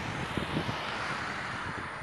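Steady outdoor background noise: an even rush with no clear source, and a few faint ticks.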